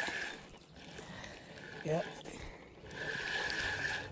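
Spinning reel being cranked to bring in a hooked fish, giving a steady high whine that comes and goes and is strongest near the end. A short spoken "yep" comes about two seconds in.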